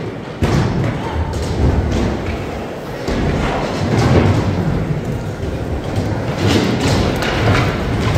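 Skateboards on a concrete skatepark floor: wheels rolling and several thumps of boards and landings hitting the floor.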